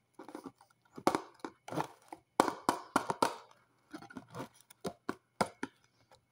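A bar of soap scraped and rubbed against a cardboard soap box, in a run of short, irregular scratchy strokes.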